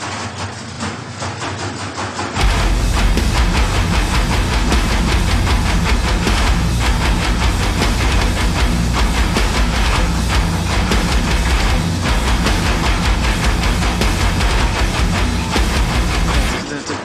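Top-loading washing machine running with a rhythmic knocking beat, then about two seconds in a loud song with heavy bass comes in over it and carries on.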